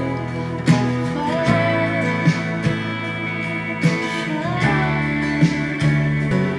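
Acoustic guitar strummed in slow chords, with a woman's voice mumbling an improvised, wordless melody over it as she works out a new song.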